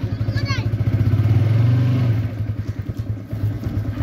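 Motorcycle engine running at low speed with an even, rapid pulse as the bike moves off down a lane. It rises a little, then eases off after about two seconds. A short high call, like a child's voice, comes near the start.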